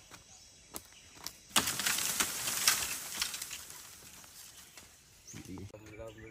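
Magic-power sound effect: after a couple of faint clicks, a sudden crackling, hissing rush bursts in and fades away over about three seconds.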